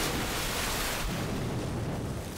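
Animated energy-attack explosion sound effect: a steady rushing noise, thinning slightly after about a second.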